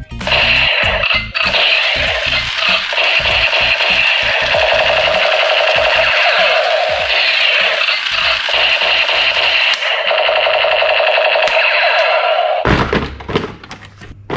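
Battery-powered toy submachine gun's electronic firing sound effect, a loud, fast, steady rapid-fire buzz from its small speaker, played as the gun's lights flash. It cuts off abruptly near the end, followed by a few light knocks.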